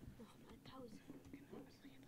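Faint, hushed voices talking quietly, close to silence.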